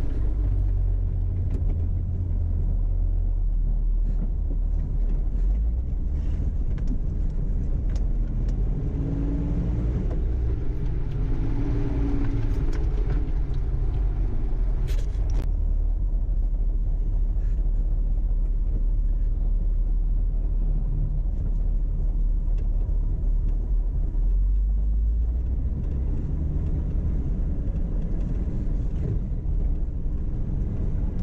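Engine and drivetrain of an off-road four-wheel-drive vehicle crawling over a rough dirt trail, a steady low rumble heard from inside the cab. The engine note rises and falls briefly about ten seconds in, and a single sharp click comes about fifteen seconds in.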